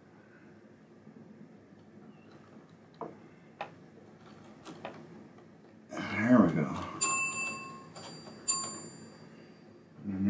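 A pinball machine's metal dome bell struck twice, about a second and a half apart, each strike ringing with several clear tones that die away; just before it comes a brief clatter and a short vocal sound. Faint clicks of hands and tools on the mechanism come earlier.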